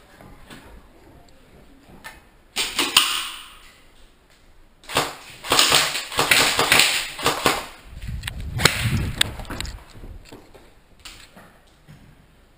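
Loud bursts of clattering, rustling noise with many sharp knocks, from a player moving fast with gear close to a helmet camera. A deep rumbling thump follows about eight seconds in.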